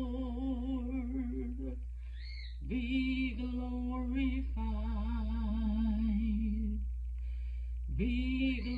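A solo voice singing a slow song unaccompanied, holding long notes with vibrato, with a break for breath about two seconds in and another near the end.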